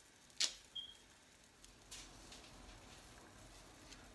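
A sharp click about half a second in, then a smaller click with a brief high tone, a few faint ticks, and a faint steady low hum of kitchen room tone.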